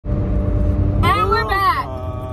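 Steady low rumble and hum inside a car's cabin while it is driven, with a high, drawn-out voice (an exclamation or a sung line) from about a second in to near the end.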